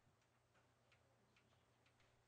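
Near silence: a faint low steady hum with a few soft, irregular ticks.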